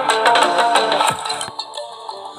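Electronic dance music with a plucked melody and a beat, played from a phone through a homemade foldable Bluetooth speaker built from PVC pipe. The music thins out near the end.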